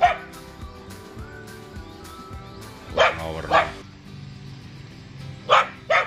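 A guard dog in a wire cage barking in short, sharp barks: one at the start, two about three seconds in and one near the end.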